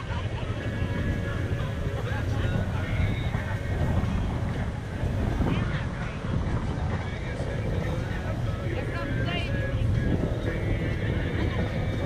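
ATV engine running steadily under way on a muddy trail, a low rumble that rises and falls a little with the throttle.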